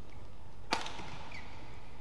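One sharp crack of a badminton racket striking the shuttlecock about three quarters of a second in, with a brief ring after it, followed by a short squeak of a shoe on the court, over steady arena noise.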